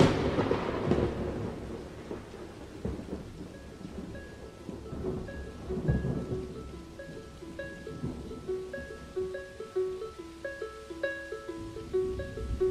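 Recorded thunderstorm: a sharp thunderclap at the start, then rolling thunder and steady rain, with further rumbles a few seconds in. About three or four seconds in, a soft plucked melody of short repeating notes fades in over the storm, opening a pop song.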